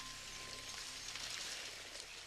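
Faint steady hiss, even and without pitch, with no music or speech over it.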